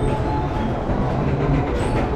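A carousel in motion: the steady mechanical rumble of the turning platform and its drive, heard from on board.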